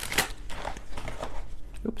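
A deck of oracle cards being shuffled by hand: a quick, irregular run of papery flicks and rustles.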